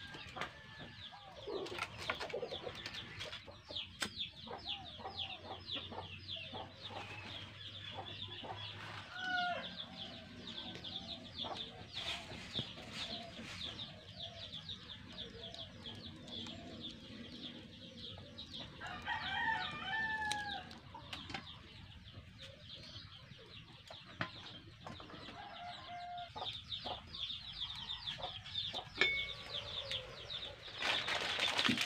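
Faint calls of farmyard fowl clucking, with louder calls about nine seconds in and again near twenty seconds, over continual high chirping of birds.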